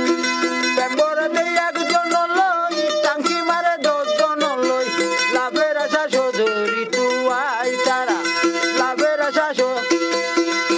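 A man singing while strumming a mandolin. The mandolin plays alone for about the first second, then the voice comes in over it. Near the end there is a held note sung with a wavering vibrato.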